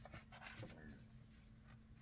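Faint rustle of a glossy book page being turned, with a hand brushing over the paper.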